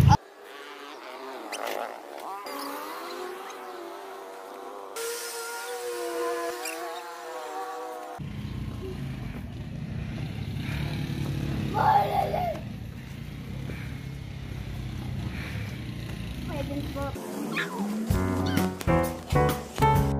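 Outdoor background noise with faint, indistinct voices. Background music with a steady beat starts near the end.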